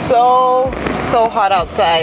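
A woman's voice: one held vocal sound about half a second long, then a few short vocal sounds.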